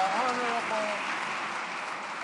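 Members of Parliament in the House of Commons chamber applauding, with a few voices calling out during the first second.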